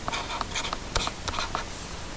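Stylus scratching on a tablet surface as numbers are hand-written, a few short strokes in quick succession.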